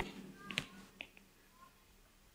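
A quiet pause in which the tail of a sung recitation dies away, followed by a few faint, short clicks about half a second and a second in.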